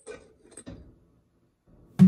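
A glass saucepan lid with a steel rim is set down onto a stainless steel pot, giving a few light knocks and clinks within the first second.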